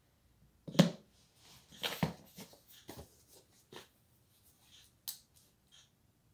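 Handling noises as a phone is set down on the floor and a small notebook is picked up and opened: a knock about a second in, then a cluster of rustles and taps around two seconds, and a few lighter clicks after.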